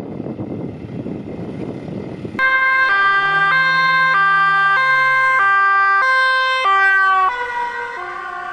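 Dutch police Volkswagen Touran's two-tone siren, starting suddenly a little over two seconds in and alternating between a high and a low tone roughly every half second. Near the end it drops in pitch and gets quieter as the car passes and pulls away. Before the siren there is a rushing noise of wind and road rumble.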